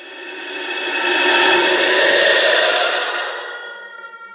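Eerie ghost sound effect: a hissing drone with several steady high tones. It swells up over the first two seconds, then slowly fades away.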